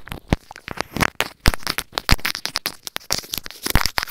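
Teeth and lips nibbling on a small corded microphone held in the mouth: close, irregular crackles and clicks from mouth contact with the mic capsule.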